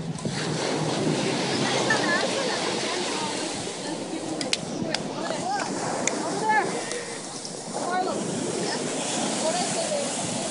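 Surf washing up on a sand beach, a steady rushing noise, with several people's indistinct voices talking over it.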